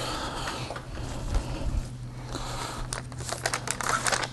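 Crinkling, rustling handling noise, like paper or plastic sheets being handled or written on, ending in a quick run of small clicks.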